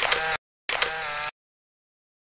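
Camera shutter sound effects, two short, sharp clicks in quick succession as the photos appear.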